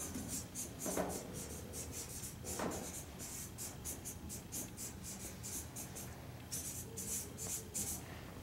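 Felt-tip marker writing on flip-chart paper: a run of short, quick strokes.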